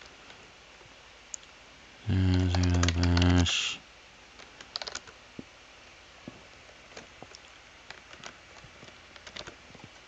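Typing on a computer keyboard, with scattered single keystrokes through the second half. A person's voice sounds briefly, for about a second and a half, about two seconds in.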